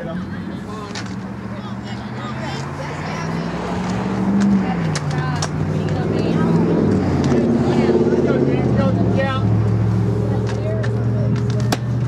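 A motor vehicle engine running and growing louder. Its pitch rises over the first few seconds, drops about four and a half seconds in, and then settles to a steady note. Near the end there is a single sharp crack of a softball bat hitting the ball.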